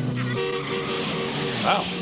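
Film soundtrack of a truck chase: held music notes over the noise of trucks driving fast on a dirt road. The notes change to a new, higher pair about half a second in.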